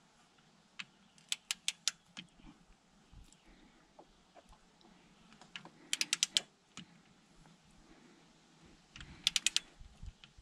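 Ratchet of a click-type torque wrench clicking as the handle is swung back between strokes, driving the front differential drain plug in toward 24 ft-lb. Three quick runs of four to six clicks, about a second, six seconds and nine seconds in.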